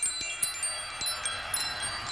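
Glittering high-pitched chimes, many small bell-like notes struck one after another and left to ring, like a wind chime.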